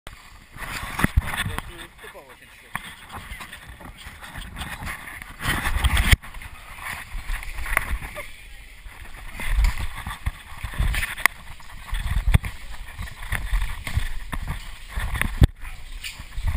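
A person crawling through a corrugated plastic pipe: irregular scuffs, scrapes and knocks of body and camera against the ribbed walls.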